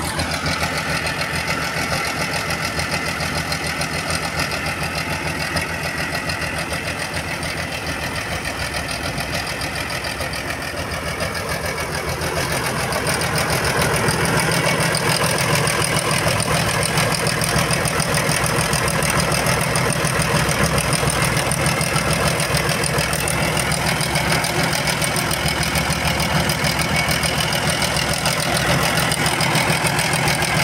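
Air-cooled diesel engine of a green Torpedo tractor idling steadily, heard close to the open engine bay. It grows somewhat louder about halfway through and then holds even.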